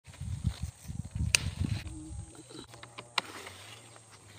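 Garden scissors cutting a white cucumber from its vine, with a sharp snip about a second in and another near three seconds, over a low buffeting rumble on the microphone that dies away after about two seconds.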